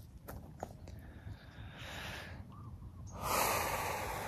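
A man breathing out close to the microphone: a soft exhale around the middle, then a longer, louder one near the end.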